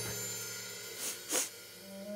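A quiet pause in a children's song: a low held musical note fades away, and a short breathy sound effect comes about a second and a third in.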